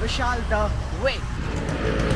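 Auto-rickshaw engine rattling close by, its noise growing louder in the second half as it comes alongside.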